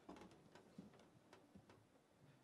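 Near silence in a concert hall, broken by scattered faint clicks and a few soft knocks at irregular moments: the small noises of orchestra players and audience shifting in a pause in the music.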